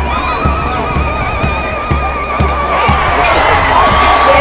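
Bass drum of a marching parade beating a steady march time, about two beats a second. Over it a long, high, wavering cry carries for the first three seconds, and another high call rises and holds near the end.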